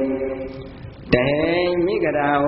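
A Buddhist monk's voice intoning a sermon in a chant-like way: one drawn-out phrase trails off, and after a brief dip a single long syllable starts sharply about halfway through and is held.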